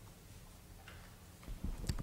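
Faint steady low hum, then a few low thumps and a couple of sharp clicks near the end.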